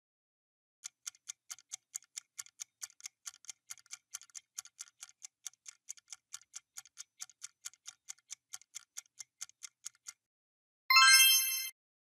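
Countdown-timer ticking sound effect, sharp clock ticks at about four a second for some nine seconds while the answer time runs down, ending in a short loud electronic tone that marks time up.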